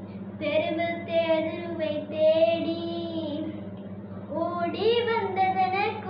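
A young girl singing an action song solo without accompaniment, holding long notes in two phrases with a short breath between them about four seconds in. A steady low electrical-sounding hum runs underneath.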